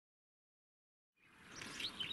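Dead silence, then outdoor ambience fading in just over a second in, with a few faint bird chirps.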